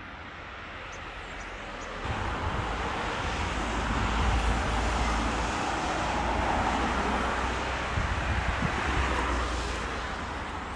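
Road traffic noise: a steady rush of passing vehicles with a low rumble, swelling about two seconds in and easing off near the end.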